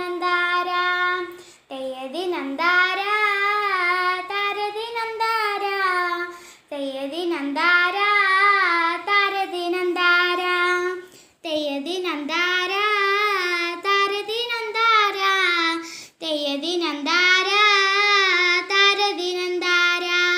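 A single high voice singing a Malayalam folk song (nadan pattu) about farming, unaccompanied, in four long phrases with short breaks for breath between them.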